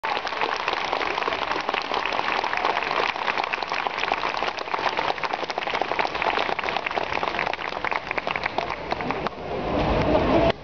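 Audience applauding: a dense patter of many hands clapping that dies down near the end.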